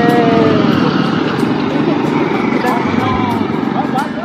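Small motorcycle engine running under load, with men's long drawn-out shouts over it.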